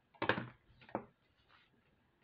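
Jewellery pliers knocking and clattering against a tabletop as they are picked up: a louder clatter just after the start, a sharper knock about a second in, and a faint tap after it.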